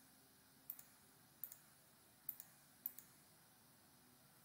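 Faint computer mouse clicks: about four in under three seconds, most of them a quick pair of sharp ticks from the button being pressed and released, as spline points are placed.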